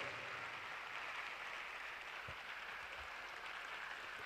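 A congregation applauding faintly, many people clapping steadily.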